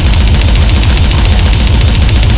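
Goregrind song: rapid, even blast-beat drumming over heavily distorted, bass-heavy guitars, with no vocals in these two seconds.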